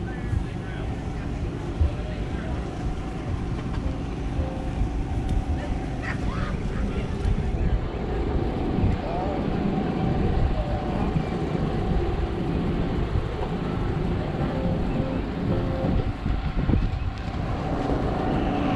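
Background ambience of people talking and a vehicle engine running steadily, with some wind on the microphone.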